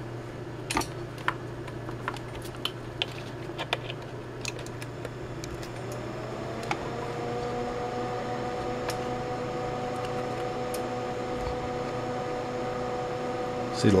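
Steady low hum with scattered clicks. About six seconds in, a rising whine settles into a steady tone as the COSEL P1500 1500-watt switching power supply is loaded to about 640 watts by a resistive load.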